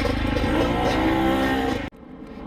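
Off-road motorcycle engines running at idle, with a steady droning tone over the low engine pulsing. The sound cuts off abruptly near the end.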